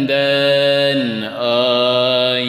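Unaccompanied male voice singing a Turkish Sufi ilahi in makam Hüzzam, stretching a long melismatic note that wavers slightly. There is a brief break a little after a second in, then he moves to a new held note, over a steady low drone.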